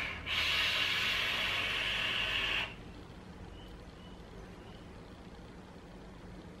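Sub-ohm vape with a 0.1-ohm coil fired through a long draw: a steady hiss of air and sizzling coil for about two and a half seconds, which then stops.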